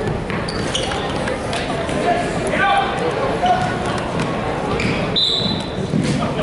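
Live basketball game sound in a gym hall: the ball bouncing on the hardwood, short high sneaker squeaks, and voices of players and spectators echoing, with a brief high squeak about five seconds in.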